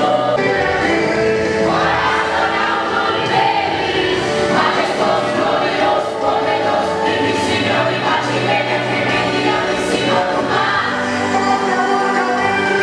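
Christian worship song with choir singing over instrumental backing, loud and steady throughout.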